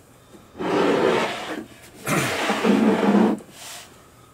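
Plastic Castle Grayskull playset scraping across a tabletop as it is turned around, in two long scrapes of about a second each.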